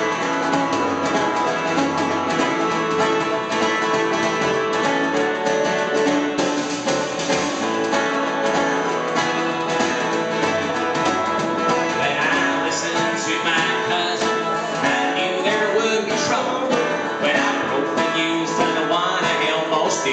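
Live band music: acoustic guitar played with a drum kit, and a man's singing voice entering about twelve seconds in.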